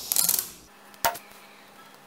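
Clear adhesive tape crackling as it is pressed down over LEDs on a perfboard, with a single sharp click about a second in.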